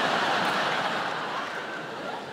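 Large theatre audience laughing, loudest at first and slowly dying away.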